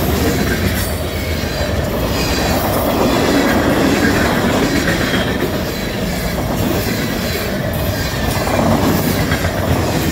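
Freight cars of a long mixed freight train rolling past at close range: boxcars and lumber-loaded centerbeam flatcars. Their steel wheels make a steady rumble and clatter on the rails, with scattered clicks as the wheels cross joints.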